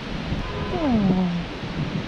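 A puppy whining once, a single call that slides down in pitch, about halfway through.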